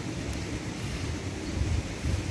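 Low, steady rumbling background noise with no distinct events.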